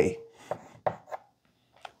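Chalk writing on a blackboard: three short, sharp taps and strokes about half a second apart.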